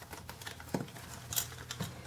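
A pink budget ring binder's snap strap being unfastened and the binder opened: a few soft clicks and light rustling of its plastic pages.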